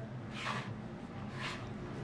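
Fingers rubbing flour and sugar moistened with a little water on a baking mat, two soft gritty rustles, about a second apart, as the dough is worked into small crumbs.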